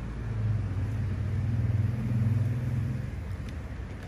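A low rumble that swells about half a second in and fades out just after three seconds.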